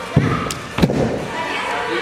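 Two heavy thumps of a gymnast's feet on a padded gym mat during a standing back salto, about two-thirds of a second apart: the takeoff push just after the start and the landing a little under a second in, with a sharp click between them.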